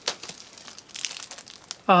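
Plastic packaging crinkling and disc cases clicking as Blu-ray cases are handled, a series of small crackles that thickens about a second in.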